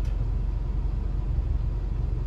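Car engine idling, heard inside the cabin as a steady low rumble.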